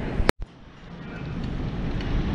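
A sharp click where the recording cuts, then a brief dropout. After it comes low, even rumbling background noise that slowly grows louder, typical of a camera microphone in a large store.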